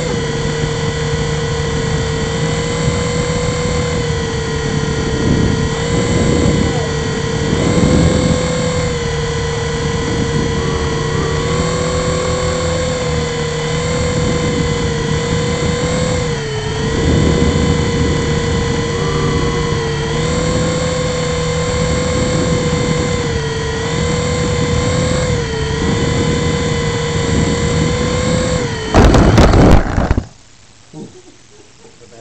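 Syma S107C mini RC helicopter's small electric rotor motors whining steadily, heard close up through its onboard camera, the pitch dipping briefly several times. Near the end comes a loud, brief burst of noise as the helicopter crashes to the floor.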